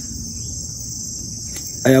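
Steady, high-pitched drone of a forest insect chorus, unbroken throughout. A man's voice comes in near the end.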